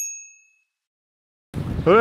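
A bright, high chime sound effect rings out and fades within about half a second, followed by a second of complete silence.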